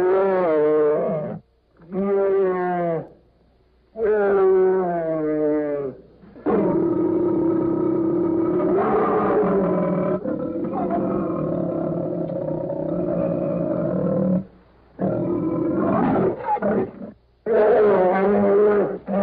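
Brown bear roaring over and over: several separate wavering roars of a second or two each, then one steadier roar of about eight seconds, then more short roars near the end.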